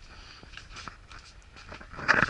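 Quiet room tone with faint rustling and a few light ticks from a handheld camera being moved about.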